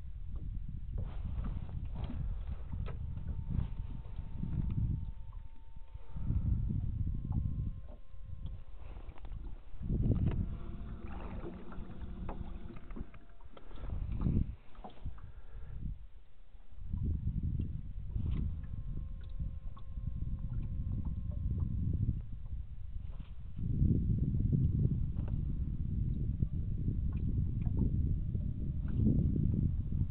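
Water and wind noise around a small aluminium fishing boat drifting on open water: an uneven low rumble that swells and drops. A brief hum comes in around the middle, and faint thin tones come and go.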